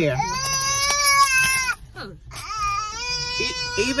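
A small child crying in two long, high, drawn-out wails. The first breaks off a little under two seconds in, and the second starts about a second later.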